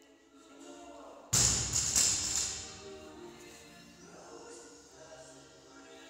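A loaded barbell with rubber bumper plates is dropped from the shoulders onto a rubber gym floor. It lands with a loud thud about a second in, strikes once more as it bounces, then rattles down.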